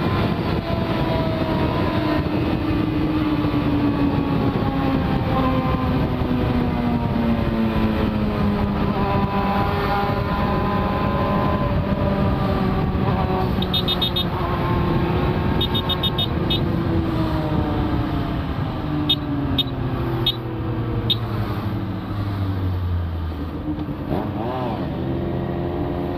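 Yamaha FZ6 inline-four engine under heavy wind rush, its pitch falling steadily as the motorcycle slows down from highway speed. Two short runs of high beeps come in the middle.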